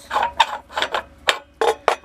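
A few sharp metal clicks and knocks as the steel cap is worked loose and lifted off the fill pipe on top of the charcoal gasifier's hopper.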